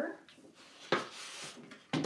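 Brief handling sounds of a 12x12 sheet of scrapbook paper, a short rustle or tap about a second in and another near the end.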